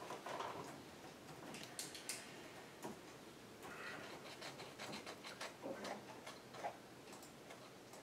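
Faint, irregular clicking of laptop keyboard keys, coming in scattered runs with a few soft paper rustles.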